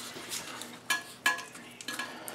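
Plastic flush valve repair parts handled in the hands: a few light clicks and rustles, the sharpest about a second in.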